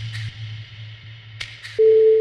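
Generative pentatonic ambient music: a held low tone slowly fading, a higher tone entering near the end, and pairs of short soft ticks about a second and a half apart over a faint hiss.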